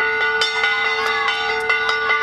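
Metal aarti hand bell rung rapidly, about five strikes a second, over a steady, held ringing tone.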